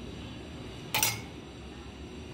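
A metal spoon clinks once, about a second in, as it is lifted from a plastic tub of powdered sugar.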